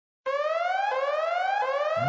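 Electronic siren effect from a novelty ringtone: a rising whoop tone that starts about a quarter second in and repeats three times, about two-thirds of a second apart.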